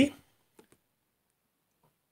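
Two faint clicks from a glass tumbler being picked up off a table, after the tail of a spoken word.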